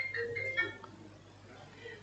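A short electronic tune of quick, high-pitched notes at shifting pitches, stopping about a second in.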